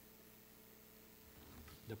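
Near silence: room tone with a faint steady hum, until a man's voice begins a word at the very end.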